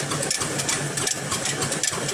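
Old black diesel engine running a stone flour mill (chakki), a steady mechanical clatter with a rapid, even beat.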